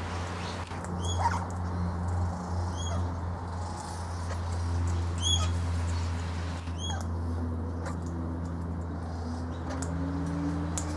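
A bird calling in short high-pitched notes, four times at intervals of about one and a half to two and a half seconds, over a steady low hum.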